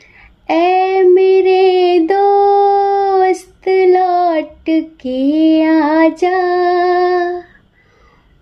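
A high solo voice singing a Hindi song in phrases of long held notes that slide between pitches, with short breaks between phrases and hardly any accompaniment.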